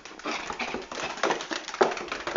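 Yorkshire terrier puppy and another small dog playing together: an uneven run of quick scuffles and short vocal noises.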